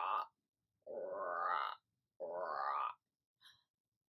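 A woman's voice imitating a frog's croak three times, each call about a second long and sweeping up in pitch at the end.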